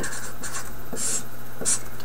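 Marker pen writing numbers on a white surface, with two short stroke sounds, one about a second in and one near the end.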